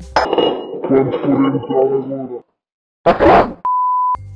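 Clinking of a glass bowl and kitchen dishes, then a short gap, a loud hiss-like burst, and a steady high test-tone beep that goes with a colour-bar test card near the end.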